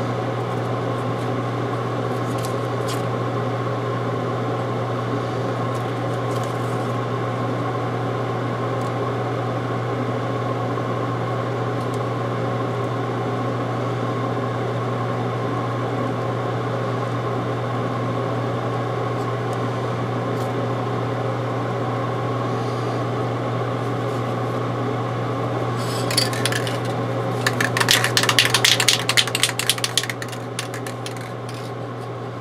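Steady low hum of a running electric motor or fan. About 26 seconds in come a few seconds of scratchy rubbing noise.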